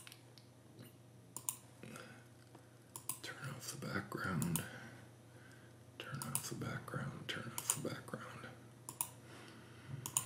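Computer mouse clicking: a handful of short, sharp clicks, some in quick pairs, as settings are toggled in software. Faint low murmured speech comes in between.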